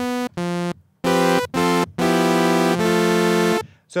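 Revolta 2 FM software synthesizer played with a gate-like amplitude envelope (quick attack, full sustain, very short release), so each note sounds at a steady level while held and stops abruptly on release. Four short notes, then a longer held sound that changes pitch partway and cuts off near the end.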